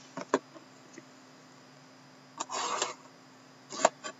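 Hands handling a sealed cardboard trading-card box and its loose plastic shrink wrap. There are a few light clicks and taps at the start, a short crinkling rustle about two and a half seconds in, and another couple of clicks near the end.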